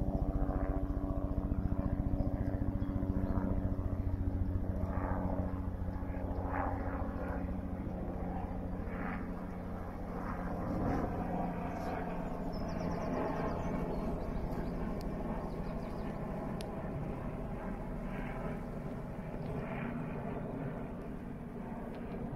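Helicopter flying overhead with its steady rotor chop and engine hum, gradually quieter over the first several seconds as it moves away.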